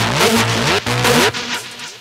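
Drum and bass music in a breakdown: a run of rising bass glides over light percussion, fading down toward the end.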